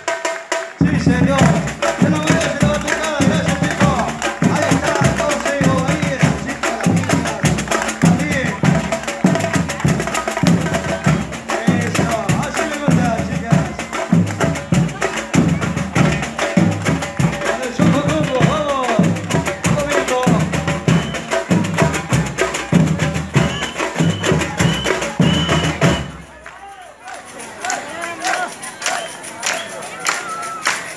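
A carnival batucada drum line, with large bass drums and other percussion, playing a steady driving beat. It stops abruptly about four seconds before the end, leaving quieter crowd sound.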